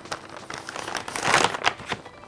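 Paper shopping bag crinkling and rustling as it is handled and pulled open, loudest about one and a half seconds in.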